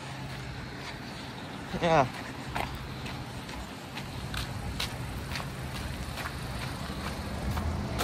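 Steady low hum of an outdoor heat pump or AC condensing unit running, with faint footsteps on pavement.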